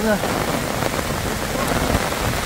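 Heavy rain falling in a steady downpour, heard from under an umbrella.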